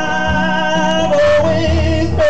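A man singing long, wordless held notes in a high voice over his own strummed acoustic guitar; the note steps down a little about a second in.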